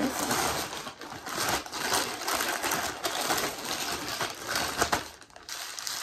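Plastic packaging crinkling and rustling as wrapped clothing items are pulled out of a poly mailer bag and handled, a dense crackle of small clicks with a brief lull near the end.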